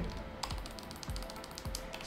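Computer keyboard keys pressed in a quick run of clicks, starting about half a second in, as a number in a spreadsheet cell is deleted and retyped.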